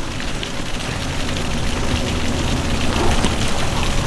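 Water splashing and sloshing as a swimmer ducks under the surface, a steady crackling patter of water.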